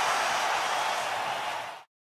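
A steady hissing rush of noise from the sponsor ident's soundtrack, fading out about a second and a half in and dropping to a moment of silence.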